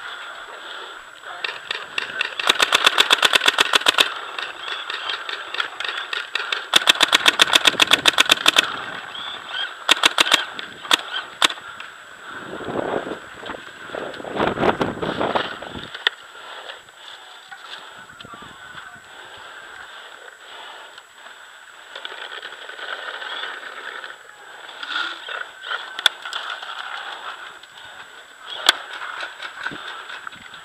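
Proto Matrix Rail electronic paintball marker firing two rapid strings of shots, each over ten shots a second and lasting under two seconds, a few seconds apart, followed by a few scattered single shots; isolated pops come later.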